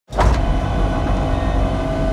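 A low rumbling drone with a steady held tone above it, starting abruptly: film-trailer sound design.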